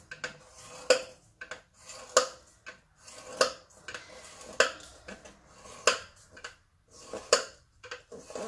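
A scoring stylus drawn across designer series paper along the grooves of a scoreboard: one short scratchy stroke about every second and a quarter, six strong ones in all, with fainter scrapes between. Each stroke scores a fold line, one every half inch.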